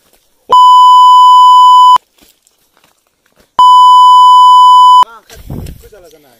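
Two loud, steady, high electronic bleeps, each about a second and a half long and starting and stopping abruptly, with a short gap between them: an edited-in censor bleep. A voice follows near the end.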